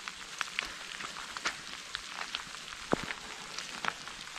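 Rain falling, an even hiss dotted with irregular sharp ticks of drops striking close to the microphone, the loudest about three seconds in.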